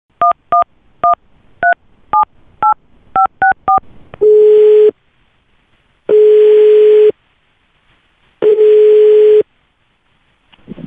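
A phone call being placed: a quick string of about nine two-tone keypad beeps as the number is dialled, then three ringing tones of about a second each as the line rings at the other end.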